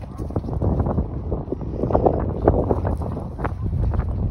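Wind buffeting the phone's microphone: an uneven, gusty rumble.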